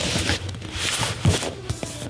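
Cardboard console box rubbing and scraping as it is handled and turned, with faint background music underneath.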